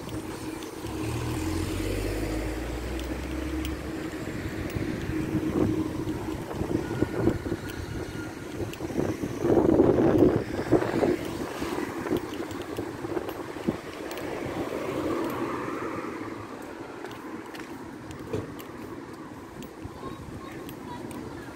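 City street traffic: cars passing slowly along a shopping street, with the loudest pass about halfway through. A low rumble of wind on the microphone comes in the first few seconds.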